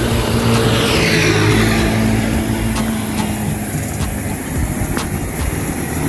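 Road traffic passing close by: motor vehicle engines running over tyre noise, with one vehicle going past in the first two seconds as a falling sweep.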